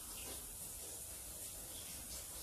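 Faint, steady hiss with a low rumble underneath and no distinct events.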